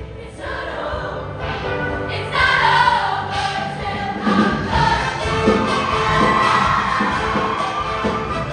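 Women's show choir singing with live band accompaniment, getting louder about two and a half seconds in.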